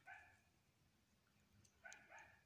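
Near silence with two faint, short dog yelps, one at the start and one near the end.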